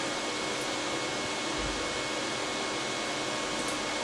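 Steady background hiss of room and equipment noise with a faint, high, steady tone running through it.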